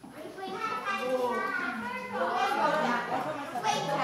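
Indistinct chatter of several people talking at once, children's voices among them, with no single clear speaker.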